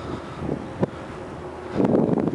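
Wind buffeting the microphone, with a couple of brief knocks about halfway through and a stronger gust near the end.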